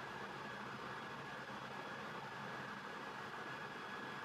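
Steady faint hiss of room tone and recording noise, with no distinct events.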